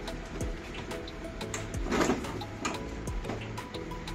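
Background music with tonal chords and a light percussive beat.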